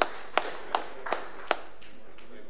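The last scattered hand claps of a round of applause dying away: about five single claps, evenly spaced a little over a third of a second apart, ending about a second and a half in.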